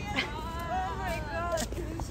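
Young women's excited, high-pitched squeals and cries, long and wavering, with little in the way of words.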